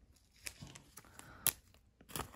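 Trading cards and clear plastic being handled: faint rustling and light ticks, with one sharp click about one and a half seconds in.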